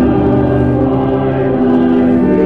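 Congregational hymn sung with organ accompaniment, in slow held chords; the chord changes about a second and a half in.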